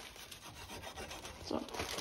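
Large kitchen knife cutting fresh chives against a wooden chopping block, a faint rasping scrape with small ticks.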